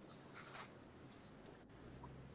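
Near silence with faint scratchy rustling, as of a phone being moved about in the hand.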